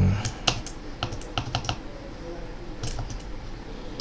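Computer keyboard typing: scattered single key clicks, several in quick succession about a second in and a couple more near the end. A brief low vocal hum opens, louder than the clicks.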